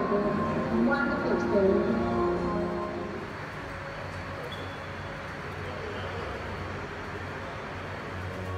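Film soundtrack played over loudspeakers in a large hangar: voices and music for about the first three seconds, then a quieter, steady, noisy rumble.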